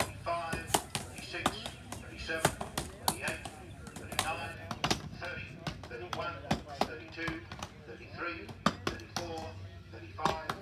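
Several axes chopping into logs in an underhand woodchop, sharp irregular overlapping strikes several times a second, with voices calling out between strokes.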